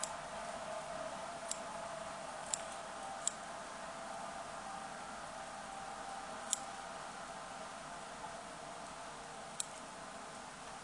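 Small scissors snipping through spun deer hair as a fly's body is trimmed square: five crisp, isolated snips a second or more apart over a steady faint hiss.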